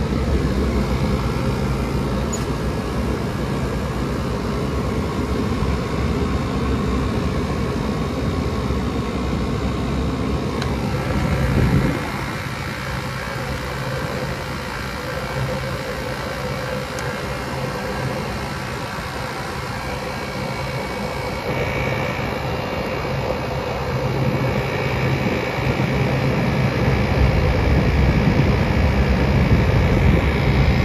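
GE PTAC (packaged terminal air conditioner) running, heard at its outdoor grille: a steady mechanical whir with a low hum. The sound drops a little about twelve seconds in and grows louder near the end. The outdoor coil is caked with dust and lint, a unit the owner thinks should have blown up by now.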